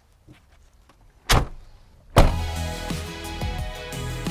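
The rear cargo door of a 2018 Ram ProMaster 3500 van slammed shut once, a single loud bang about a second in. Background music starts about two seconds in and carries on.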